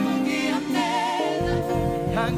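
Gospel praise and worship song: a sung voice with vibrato over sustained chords, with bass coming in about one and a half seconds in.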